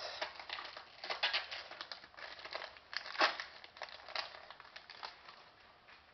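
A trading-card pack wrapper crinkling as it is handled and opened, in irregular crackly bursts that die away near the end.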